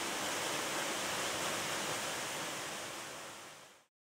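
Steady rushing of a waterfall over a 12-metre drop, an even hiss that fades out near the end.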